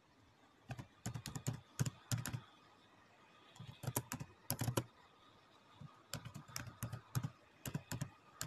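Computer keyboard being typed on, keystrokes clicking in three quick runs with short pauses between them.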